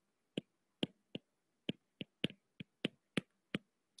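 Stylus tip tapping and clicking on a tablet's glass screen while handwriting a word: about ten short, sharp clicks at an uneven pace, roughly three a second.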